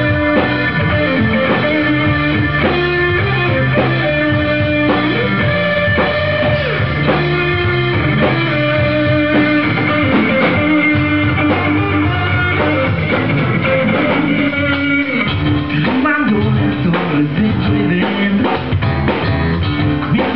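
Live rock band playing an instrumental passage: electric guitar over bass guitar and drum kit, loud and continuous.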